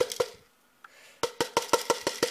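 Granular mineral potting substrate poured from a plastic measuring jug into a plant pot: a quick run of sharp clicks and rattles as the grains land. The clicking stops about half a second in and starts again a little after a second.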